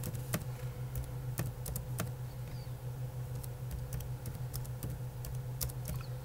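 Typing on a computer keyboard: irregular key clicks, a few a second, over a steady low hum.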